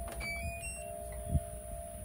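GE washer/dryer combo's power-on chime: a quick run of several short, high electronic tones as the Power button is pressed. A short low thump follows about a second later.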